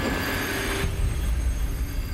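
Dramatic soundtrack effect: a rushing, noisy whoosh with a high ringing tone over a deep rumble. It dies away about a second in, leaving the low rumble.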